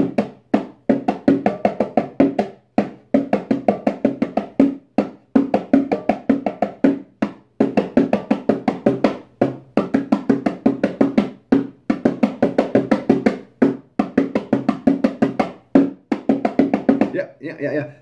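A pair of bongos played with bare hands: a fast, repeating pattern of strikes in phrases of about two seconds, each phrase broken by a short pause. It is a voodoo-drum style rhythm, played by a beginner.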